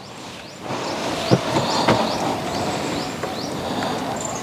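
Outdoor ambience through an open window: a steady rushing noise, like wind, comes up about a second in. Over it, a bird repeats a short rising chirp about twice a second, with a couple of faint knocks.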